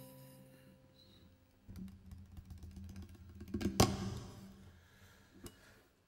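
The last ukulele chord of a song dying away, followed by knocks and rattles of the ukulele being handled and set down, its strings ringing faintly. One sharp knock a little past the middle is the loudest sound.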